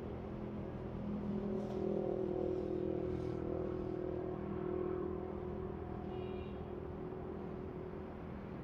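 Motor vehicle engine running, a steady hum that swells in the first few seconds and eases off after about five seconds. A brief high chirp sounds about six seconds in.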